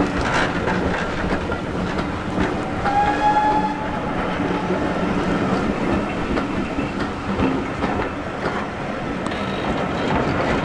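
Passenger coaches of a steam-hauled train rolling past at close range, wheels clicking steadily over the rail joints. About three seconds in, a short high tone sounds briefly.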